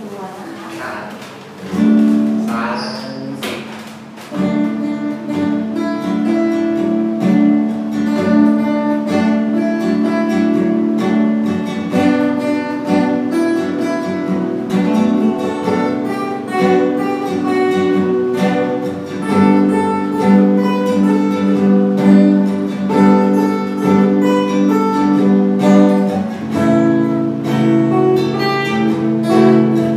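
Two acoustic guitars playing a song together, picked and strummed chords with steady ringing notes. The playing starts about two seconds in, breaks off briefly, then carries on.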